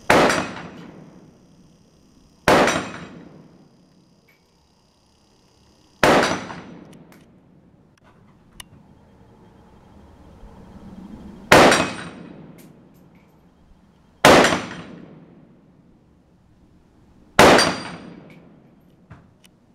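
Six shots from an SKS semi-automatic rifle in 7.62×39mm, fired at uneven intervals of about two and a half to five and a half seconds. Each is a loud crack with a decaying echo, along with the clang of steel dueling-tree plates being struck.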